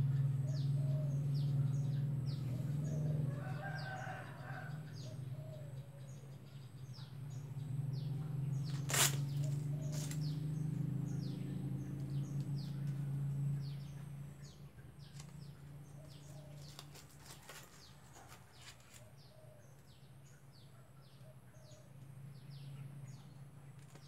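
Small birds chirping over and over in short falling notes, with a rooster crowing once about four seconds in. Under them runs a steady low hum that fades after about fourteen seconds, and a sharp click sounds about nine seconds in.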